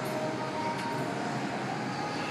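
Steady gym background noise: an even, continuous hiss with a few faint tones in it, and no distinct knock or clank from the bar.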